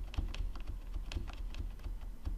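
Computer keyboard keys pressed in a quick, irregular run of clicks while lines of code are selected and indented with the Tab key.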